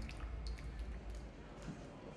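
A quiet stretch of a live band: a held synth chord and deep bass die away in about the first second, leaving scattered soft percussive taps and clicks.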